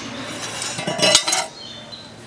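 A stinging catfish being cut and scraped against the edge of a bonti's curved iron blade. The rasping scrape builds, is loudest about a second in, and stops about a second and a half in.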